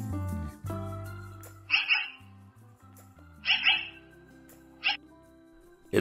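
Black-billed magpies calling harshly three times over background music: a double call about two seconds in, another double call past the middle, and a short single call near the end.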